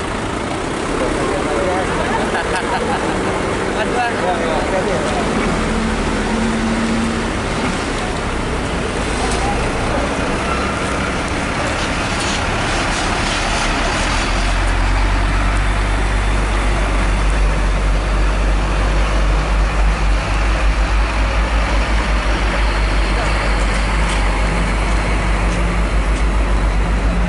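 Road traffic with vehicle engines running close by and indistinct voices. About halfway through, a deep, steady engine rumble grows louder and holds.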